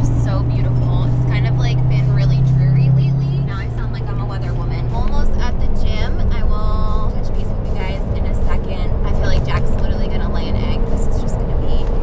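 Background music: a song with singing over held bass notes that change every few seconds, with steady road noise beneath.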